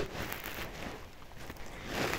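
Faint, steady hiss of room tone from a home voice recording, with no distinct event.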